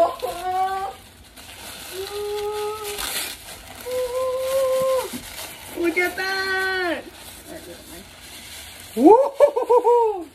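Excited wordless exclamations, drawn-out "ooh" and "aah" sounds from a woman's and a girl's voices: several long held notes, one rising and falling, and a wavering one near the end. A brief rustle of wrapping paper comes about a third of the way in.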